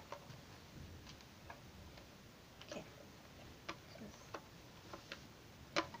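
Faint, irregular light clicks and taps, like small handling noises, spaced a second or so apart, with a slightly sharper click near the end.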